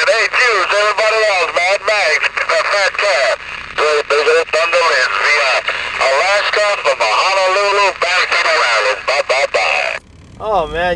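Voice received over a CB radio's speaker, talking almost without pause; it sounds thin and narrow, with a steady hiss behind it.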